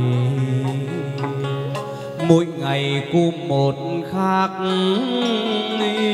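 Vietnamese chầu văn ritual music, led by a plucked lute whose notes slide and bend, with sharp plucked attacks and a steady low accompaniment.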